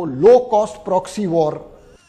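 A man speaking, his words trailing off near the end.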